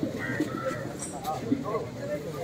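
Birds calling among indistinct voices of a crowd.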